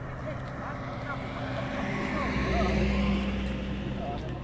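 A car passing close by on the road: its engine and tyre noise swells to a peak a little under three seconds in, then fades.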